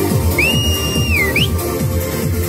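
Trance dance music with a steady beat. A high whistle-like tone rises about half a second in, holds for about a second, then falls, followed by a quick upward chirp.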